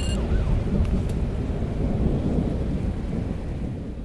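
Intro logo sound effect: a deep, noisy rumble that eases off slightly near the end.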